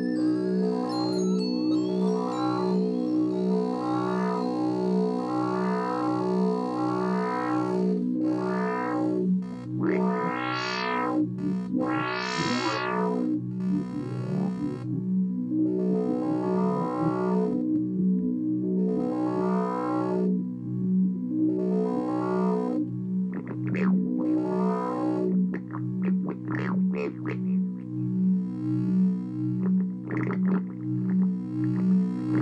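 Electronic synthesizer music from a Korg Kaossilator and a Teenage Engineering OP-1. A pulsing low drone runs under filter sweeps that rise and fall about every two seconds. Two higher sweeps come about ten seconds in, and shorter, sharper squeals come in the last several seconds.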